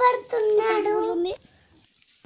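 A young child's voice in one long, drawn-out sung phrase that stops a little past halfway, leaving near quiet.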